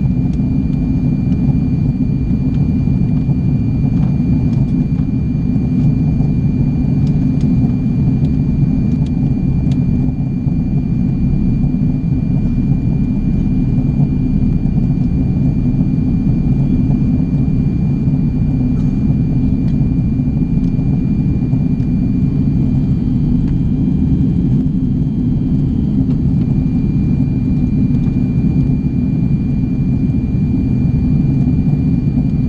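Steady low rumble of cabin noise inside an Airbus A340-600 in flight, from its four Rolls-Royce Trent 500 engines and the airflow over the fuselage, with a thin steady high whine above it.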